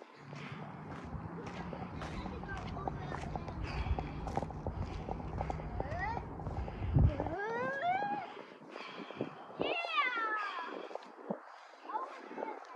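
A young child's high-pitched calls, one rising in pitch about seven seconds in and one falling around ten seconds. Before them, a low rumble with ticking runs for about seven seconds and then cuts off suddenly.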